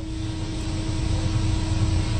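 A steady low rumbling noise that grows a little louder, with a faint steady hum that fades out about halfway through.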